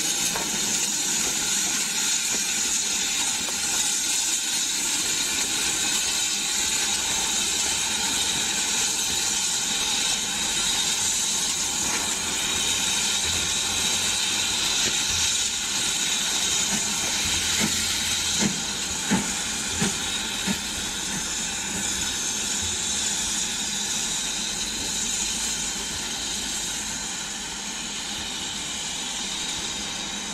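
BR Standard Class 4 steam locomotive 76079 hissing steadily as it stands and moves about with its coaches. A few sharp metallic clanks come in quick succession about two-thirds of the way through.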